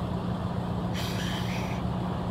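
Steady low hum of an idling truck engine, with a brief hiss about a second in.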